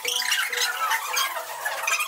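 Recorded background music with many short, high chirps over it, running steadily.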